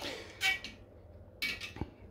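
Dial bore gauge scraping and clinking against the walls of a cylinder sleeve as it is drawn out of one bore and slid into the next. Two short metallic scrapes with a slight ring, about half a second and a second and a half in.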